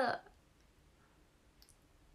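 A woman's voice ends a word at the start, then near silence with one short, faint click about one and a half seconds in.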